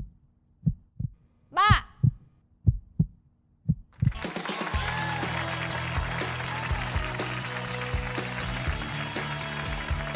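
A suspense heartbeat sound effect: slow single low thumps, with one short voice-like call near the second second. About four seconds in, loud music breaks in and carries on, the cue that both contestants have pressed to accept and the couple is matched.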